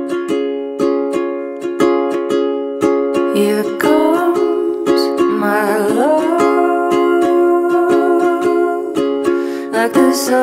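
Acoustic indie-pop song with steady strummed chords on a small plucked string instrument. A voice comes in singing about three and a half seconds in.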